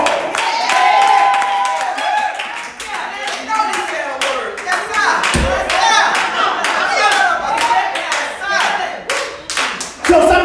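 Hand clapping throughout, with raised voices calling out over it and a single low thump about five seconds in.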